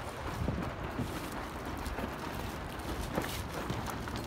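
Wind rumbling on the microphone, with light irregular knocks and clatter from a Laser dinghy's aluminium spars and rigging being handled.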